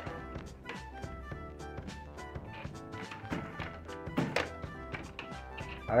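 Balls clicking and tapping irregularly, several times a second, as they bounce off the metal pins of a coin-operated ball-drop pinball slot machine and drop into its cups. Music plays underneath.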